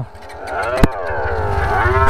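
Small motorcycle engine being revved while standing, its pitch dipping and then climbing as the sound grows louder. A sharp click comes a little under a second in.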